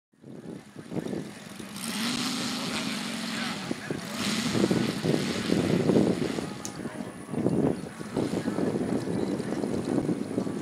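Radial engine of a large radio-controlled Hellcat model running, steady at first and getting louder about four seconds in.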